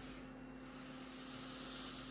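A person giving a long, soft sniff at a glass of lager to smell its aroma, over a faint steady hum.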